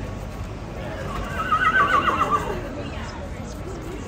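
A cavalry horse whinnying once: a loud, shrill, quavering call lasting about a second, starting a little over a second in.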